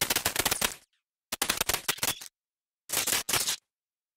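Electric crackling sound effect of a flickering neon sign, in three short bursts of rapid crackle with dead silence between them.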